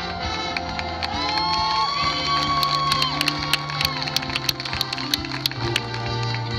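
High-school marching band playing its field show: sustained brass chords with a run of crisp percussion hits through the middle, while the crowd cheers over it.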